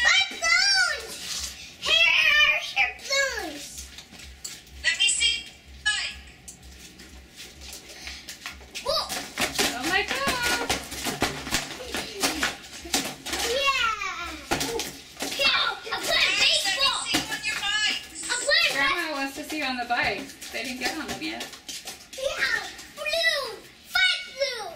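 Young children's voices talking and calling out in high-pitched tones, with a quieter spell about a third of the way in.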